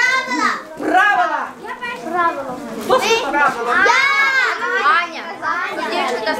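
Children's voices talking and calling out, several children at once, as they shout answers.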